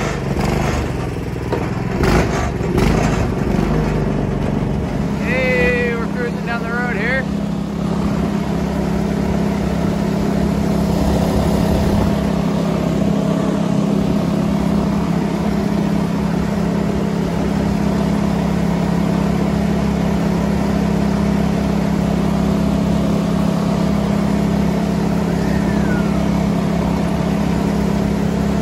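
The golf cart's pull-start gas engine running steadily through its rear exhaust as the cart moves off and drives along, with a few knocks in the first few seconds.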